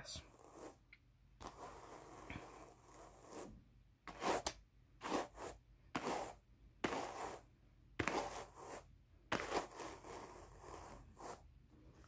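Wooden hand carders with wire teeth brushed across Jacob wool: a run of short scratchy strokes, about one a second, combing the fibre ends straight and shaking out vegetable matter.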